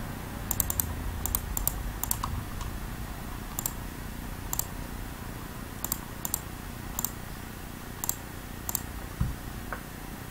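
Computer keyboard and mouse being worked in scattered, irregular sharp clicks, about a dozen in all, over a low steady hum. A soft thump comes near the end.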